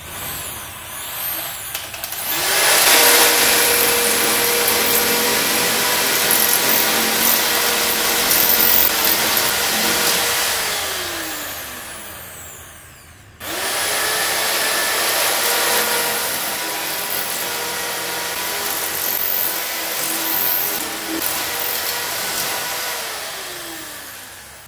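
Corded electric drill driving a nibbler attachment that punches its way through a thin metal sheet: the motor whines steadily under the dense cutting noise. It runs twice, each time winding down with a falling whine, first just past the middle and again near the end.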